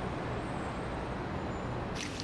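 Steady city traffic noise, an even low rumble of road traffic, cutting off suddenly at the end.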